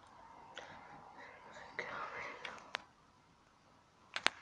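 Faint whispering with a few light clicks and rustles.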